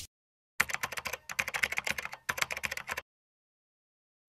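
Computer-keyboard typing sound effect: a quick, irregular run of key clicks lasting about two and a half seconds, starting about half a second in and stopping abruptly, as logo text is typed onto the screen.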